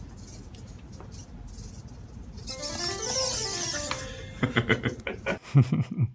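A short piano-like tune played back by a computer, its notes stepping down and then climbing back up, with a hiss over it. Short bursts of laughter follow near the end.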